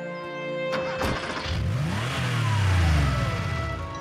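Cartoon background music with a sound effect laid over it: a sudden noisy rush about a second in, then a low rumble that rises and falls in pitch, loudest near the end.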